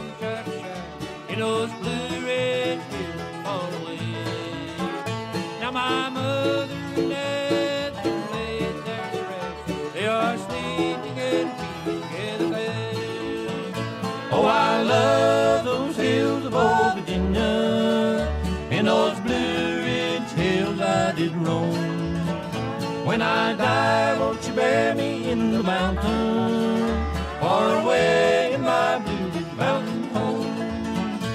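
Bluegrass band instrumental break from a vinyl record: banjo and guitar picking over a steady bass, with sliding lead lines on top about halfway through and again near the end.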